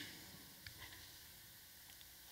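Near silence: faint room tone with a few tiny ticks.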